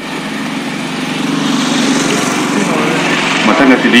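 A small engine running steadily, with a person's voice near the end.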